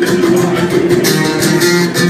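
Live band music: amplified guitar and bass holding notes over a steady beat.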